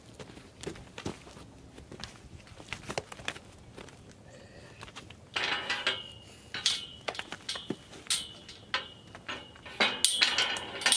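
Metal clinking and rattling from steel livestock corral panels and gate hardware, with scattered knocks and steps at first; a louder burst of ringing metallic jangling starts about five seconds in and continues in bouts.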